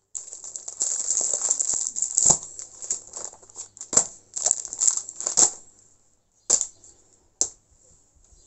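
Plastic sleeve and paper crinkling and rustling as sewing supplies are handled and laid out on a table, with sharp knocks as objects are set down. The rustling stops about five and a half seconds in, and two more knocks follow near the end.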